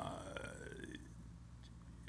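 A man's drawn-out 'uh' of hesitation at the start, trailing off over about a second into a quiet pause with faint room tone.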